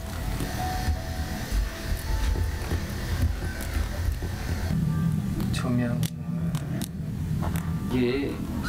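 Indistinct voices over quiet background music, with a steady low rumble underneath.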